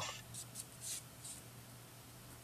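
Faint scratching of a ballpoint pen on painted brown paper-bag paper, a few short strokes in the first second and a half.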